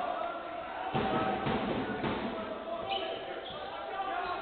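Basketball being dribbled on a hardwood court during live play, with voices in the arena.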